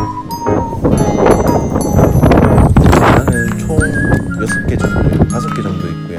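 Background music: a held, sliding melody over a busy percussive rhythm.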